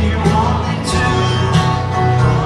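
Live band playing a slow, country-tinged ballad led by acoustic guitars, with a steady bass line.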